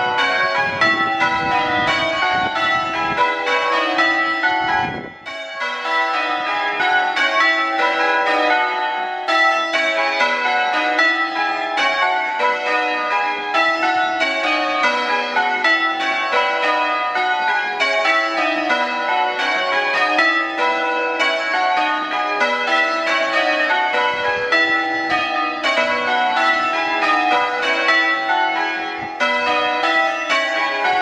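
Ring of six church bells, cast and hung by Whitechapel in 2016, tenor 6-0-19 cwt in B, rung in changes: an even, unbroken stream of strikes with the bells ringing on into each other. A brief drop in the sound about five seconds in.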